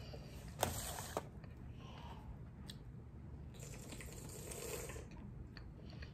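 Faint liquid sounds of a drink being sipped and swallowed from a can, with a short click about half a second in and another around a second in.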